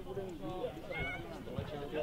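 Several people's voices talking and calling out at once, overlapping throughout.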